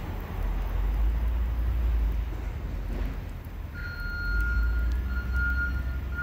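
Low, steady rumble of an idling truck engine, swelling twice. A steady high-pitched tone joins about two-thirds of the way through.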